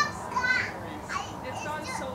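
Voices of a small group talking excitedly, with two short, very high-pitched squeals, one at the start and another about half a second in.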